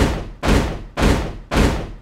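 Four heavy booming hits, about half a second apart, each with deep bass and a ringing fade. They are dropped onto the soundtrack in a steady beat.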